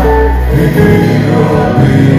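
Live gospel music: a group of voices singing together over a steady, loud instrumental backing with a strong bass line.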